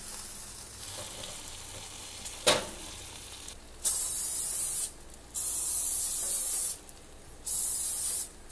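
An aerosol cooking-oil spray can hisses in three bursts of about a second each, starting about halfway through, re-coating breaded chicken drumsticks on a crisper tray. Before that there is a quieter stretch with one sharp click as the drumsticks are turned.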